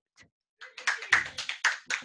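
Hands clapping: a short round of applause by one or a few people, starting about half a second in at roughly six claps a second.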